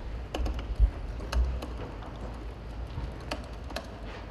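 Computer keyboard being typed on slowly, a sparse, irregular run of key clicks, with a low bump about a second in.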